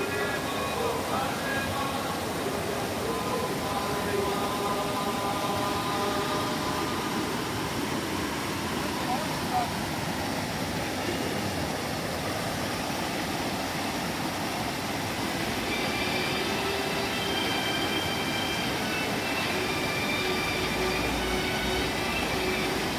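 Mountain stream rushing steadily over boulders and small cascades, with faint voices of people in the background.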